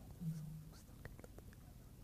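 A man's voice murmuring faintly under his breath for about half a second, followed by a few faint small clicks.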